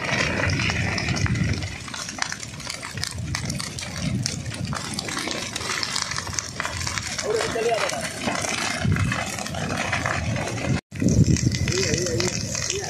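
Field sound of a scrub and forest fire: a steady rushing noise dense with small crackles from the burning dry brush, with faint voices in the background. The sound cuts out briefly near the end, then resumes.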